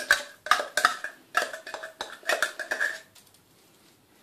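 Metallic clicks and scrapes of a tin of tuna being emptied over a glass bowl, a quick run of strikes with a faint ringing, stopping about three seconds in.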